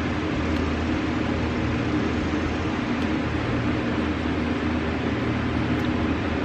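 Steady mechanical hum of a room appliance, an even drone with a low tone that neither rises nor falls.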